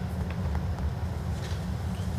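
Steady low rumble of the indoor hall's background noise, with a few faint light clicks.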